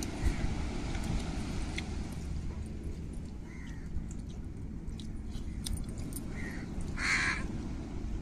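A crow cawing a few times, the loudest call near the end, over a steady low rumble of wind on the microphone.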